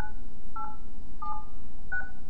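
DTMF keypad tones from a Polycom desk phone: four short two-note beeps, about two-thirds of a second apart, as the digits of a new voicemail password are keyed in.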